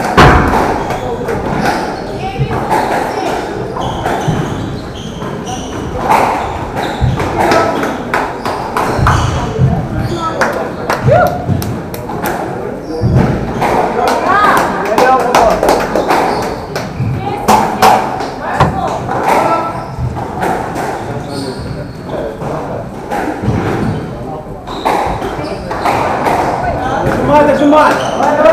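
Sharp thuds and knocks from a squash ball and players' feet on a squash court, the loudest right at the start, over a steady background of people talking in the hall.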